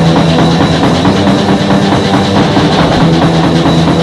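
A band playing loud music live, with a drum kit keeping a busy beat under sustained low notes.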